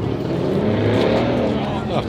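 A car engine in the lot, its pitch rising and then falling back over about a second and a half.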